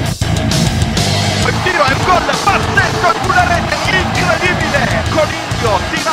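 Theme music, loud guitar-driven rock with a steady beat, playing as the podcast's closing jingle.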